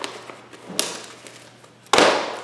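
Boxes of greeting cards and packaged craft supplies being handled and set down on a pile: a light knock, then a louder, sharper knock near the end.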